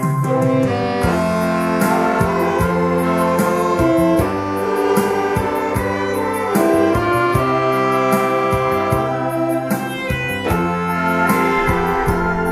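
Saxophone ensemble of alto, tenor and baritone saxophones playing a slow song melody together, with a steady drum beat underneath.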